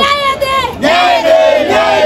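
A crowd of protesters shouting a slogan together, in two long shouted phrases with a brief break between them.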